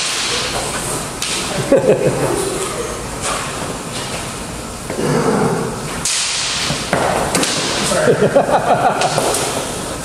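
Armoured fighters drilling with steel longswords: several sharp knocks of blade and armour, with rattling and clatter between them, in a large echoing hall.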